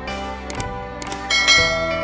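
Subscribe-button animation sound effect over soft background music: a few quick mouse clicks, then a bright notification-bell chime that rings on, the loudest sound here.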